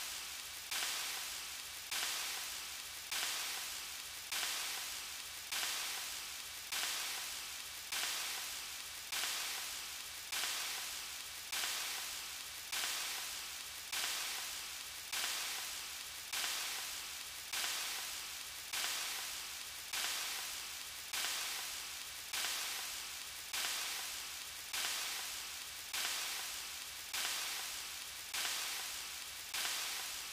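A short raspy hiss, like static, repeated in a loop a little slower than once a second. Each repeat starts abruptly and fades away.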